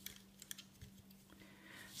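Near silence with a few faint, scattered light clicks from rubber loom bands and a crochet hook being handled on a plastic loom, over a faint steady hum.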